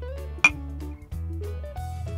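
Two glass beer mugs clinked together once in a toast, a short bright ring about half a second in, over background music with a steady bass line.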